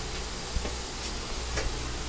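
Steady hiss and low hum of the Norfolk and Western 611 steam locomotive, heard inside its cab, with a few faint clicks.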